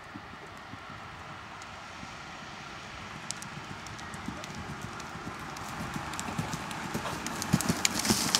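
Hoofbeats of a ridden horse on soft dirt arena footing, getting steadily louder as the horse comes closer, with the sharpest strikes near the end as it passes close by.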